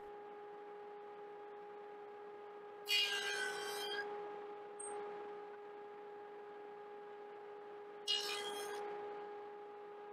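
Table saw with a stacked dado set running with a steady hum, making two passes through the wood about five seconds apart, each starting sharply and fading over about a second, the first the louder. The passes nibble away the waste of a half-lap joint.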